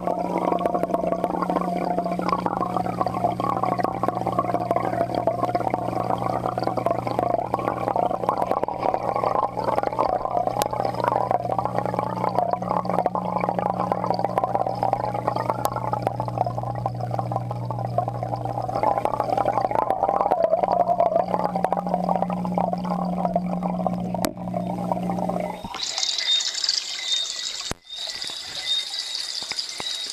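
Aquarium water heard through a submerged waterproof camera's microphone: a steady low hum with gurgling water. About 26 seconds in, the hum stops and a brighter splashing and dripping takes over as the camera comes up out of the tank.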